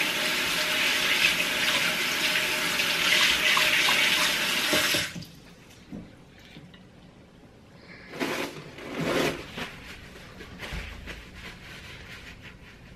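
Bathroom basin tap running, its stream splashing over hands in the sink, shut off abruptly about five seconds in. A faint click and a couple of short soft noises follow.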